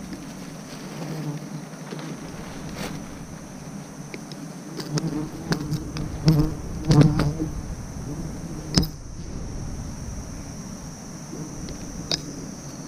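A swarm of wild honeybees buzzing in a steady drone around the nest as it is smoked and cut out. A cluster of louder rustles and knocks from leaves and branches being handled comes about five to seven seconds in, with one more sharp knock near nine seconds.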